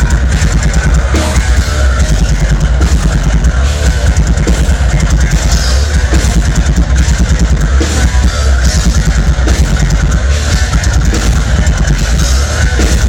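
Progressive metal (djent) band playing live, heard from the crowd: heavy distorted guitars and bass over a busy drum kit, loud and dense throughout.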